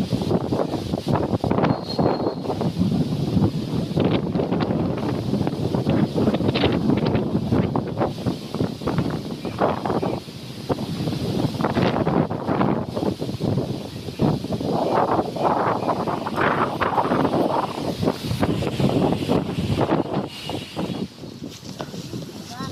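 Wind buffeting the microphone: a loud, uneven rushing noise that surges and dips.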